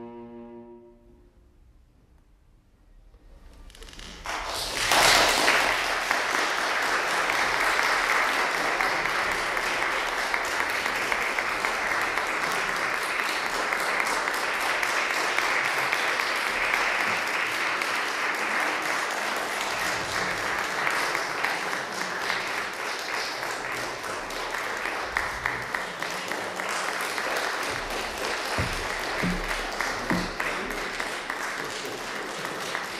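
The last held chord of an oboe-and-strings quartet dies away within the first second. After a few seconds of hush, an audience breaks into applause that swells about five seconds in and carries on as steady clapping.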